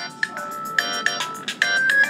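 Phone ringtone playing: a quick melody of short electronic notes, repeating.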